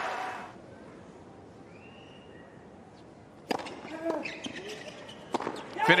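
Tennis ball struck by racquets during a hard-court doubles rally: a sharp pop about three and a half seconds in and another near the end, over a hushed crowd.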